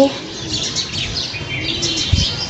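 Small birds chirping: many short, high calls overlapping one another.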